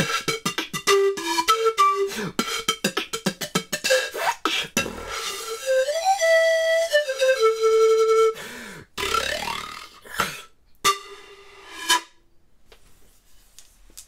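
Peruvian pan flute played with beatboxing blown through the pipes: fast percussive beats with short notes, then a phrase of longer held notes stepping up and back down, and a few spaced final notes and hits near the end.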